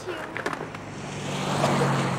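Skateboard rolling on a sidewalk, its wheels clicking a few times over the pavement joints, then a car passing close by, swelling to the loudest sound near the end.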